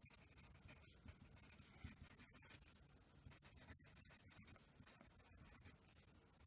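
Faint scratching of a wooden pencil writing on lined paper, in short irregular strokes with brief pauses between them.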